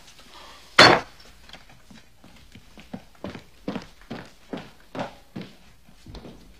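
A loud wooden thump about a second in, then footsteps on a wooden floor, about two or three steps a second.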